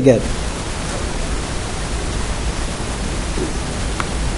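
Steady, even hiss of background noise with a low rumble underneath, with no distinct event in it.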